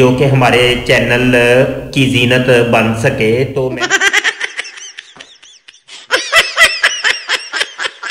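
A man speaking, then about four seconds in a switch to a high-pitched giggling laugh sound effect: quick, breathy bursts of laughter, louder from about six seconds in.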